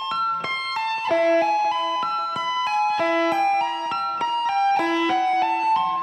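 Electric guitar playing a fast arpeggio sequence of single notes that climb and fall in repeating patterns, with tapped notes at the top of the shapes.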